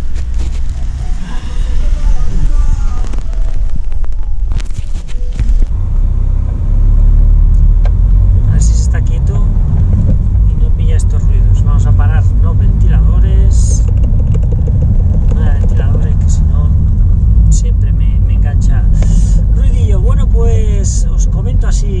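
Car cabin noise while driving: a steady low rumble of engine and road that sets in about six seconds in. Before that come knocks and rustling, as from a camera being handled.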